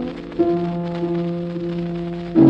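Old vocal record between the tenor's sung phrases: the accompaniment comes in about half a second in with a steady held chord, over the hiss and crackle of the old recording.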